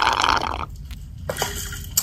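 A person drinking ice water from an insulated water bottle: a rush of water and gulping in the first half second, then quieter swallowing.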